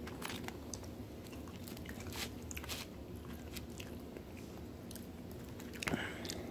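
A person chewing and biting food close to the microphone, with irregular wet mouth clicks and a little crunch.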